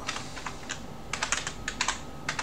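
Typing on a computer keyboard: a few separate key clicks, then a quicker run of keystrokes in the second half.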